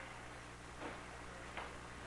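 Quiet room tone with a steady low hum and a few faint ticks, roughly three-quarters of a second apart.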